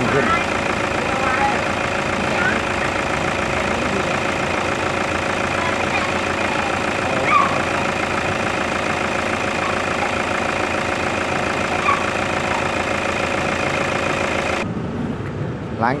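Toyota Fortuner turbo-diesel engine idling steadily while injector-cleaning fluid is dripped into its intake, treatment for heavy black smoke.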